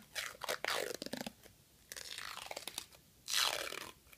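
Tegaderm transparent adhesive film dressing being peeled off skin, giving a crackly, sticky ripping. It comes in bursts over the first second or so, goes quieter, then gives a louder rip near the end.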